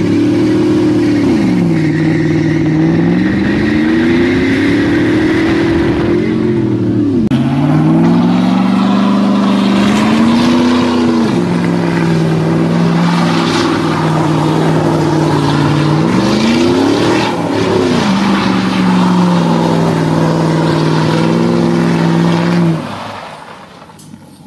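Chevy Silverado pickup's engine revving hard through a burnout over the hiss of spinning, smoking tyres. The revs dip and climb several times, then hold high. Near the end the engine drops away suddenly.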